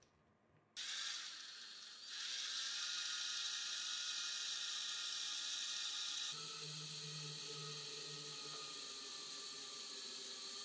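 Small electric drill running steadily as its twist bit bores through a short piece of hot-glue stick. The whirr starts suddenly just under a second in, gets louder about two seconds in, and takes on a lower hum about six seconds in.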